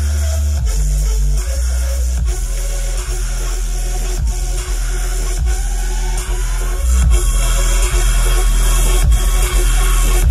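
Dubstep played loud over a festival stage sound system, with heavy sub-bass and a steady beat. A rising sweep builds from about halfway, and the music turns louder and heavier about seven seconds in.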